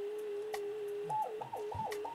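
President Jackson CB radio in upper-sideband mode sounding a steady whistle-like beat tone from a signal-generator carrier; about a second in, the pitch starts swinging up and down repeatedly, several times a second, as a finger touches the quartz crystal resonator. The touch changes the crystal's capacitance and detunes the oscillator, the sign that the resonators are not grounded.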